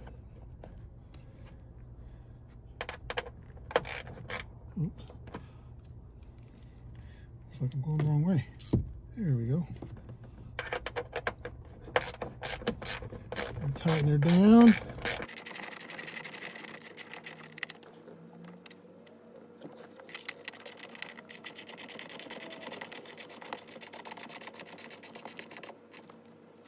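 Hand ratchet from a Jeep's stock tool kit turning a screw into the door check strap mount: scattered clicks and taps of the tool on the fastener, then a fast, even run of ratchet clicks near the end as the screw is driven home.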